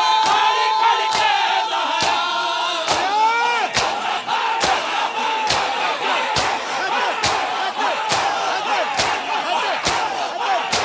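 A crowd of men performing matam: hands striking bare chests in unison as a sharp, even beat a little faster than once a second, under loud massed shouting and chanting voices.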